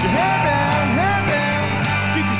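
A country-rock band playing, with guitars and drums, and a lead line that bends up and down in pitch.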